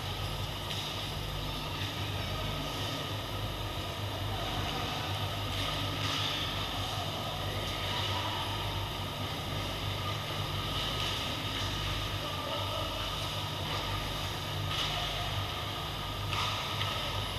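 Steady ambience of an indoor ice rink: a constant low mechanical hum under a wash of background noise, with a few faint brief scrapes from skating at the far end of the ice.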